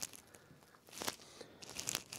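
Faint clicks of snooker balls being taken out of a pocket and set back on the table: one short knock about a second in and a few smaller ones near the end.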